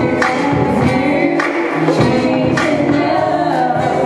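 A woman singing into a microphone over amplified music with a regular beat.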